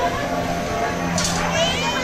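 A crowd of passengers chattering, children's voices among them, with one child's high-pitched shout about a second and a half in.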